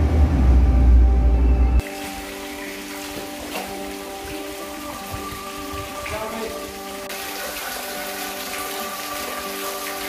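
Soft ambient background music with long held notes, over a steady hiss of water trickling down a stone wall and splashing into a canal. A loud low rumble covers the first two seconds.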